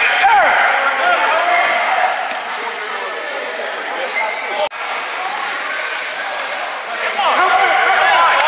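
Basketball game in a gym: a ball bouncing on the court and several short, high sneaker squeaks on the floor, over continuous echoing chatter from players and spectators in the hall. A brief break in the audio about halfway through.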